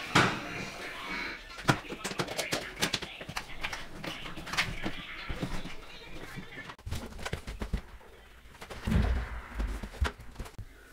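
Knocks, clicks and scrapes of a washing machine's metal cabinet being handled and shifted, then heavier low thuds near the end as the machine is tipped over.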